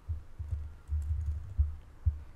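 Typing on a computer keyboard: a run of irregular keystrokes that come through as dull, muffled thuds.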